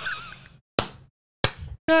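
A high, wavering voice trails off, then two short sharp impacts sound, about a second in and again half a second later.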